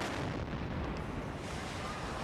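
Homemade bomb exploding: a sudden blast at the start, followed by a steady rumble that slowly fades.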